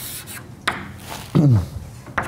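Scratchy strokes of writing on a board, with a sharp tap about two-thirds of a second in. About a second and a half in comes the loudest sound, a short falling hum from a voice.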